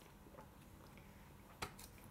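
Near silence, then a single sharp tap about one and a half seconds in, with a fainter tick just after: a small plastic cup being set down on a tabletop.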